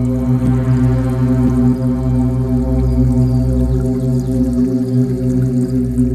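Meditation music: a steady, low sustained drone with a stack of held overtones, without a beat.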